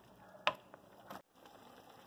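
Mostly quiet cooking sounds from a large metal pot: one sharp tap about half a second in, a wooden spoon knocking the pot while stirring noodles and vegetables. The sound cuts out briefly past the middle, then the faint simmer of the boiling broth is heard.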